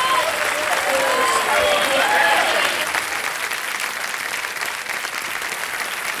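Studio audience applauding, dying down over the last few seconds, with a few faint voices over the clapping in the first couple of seconds.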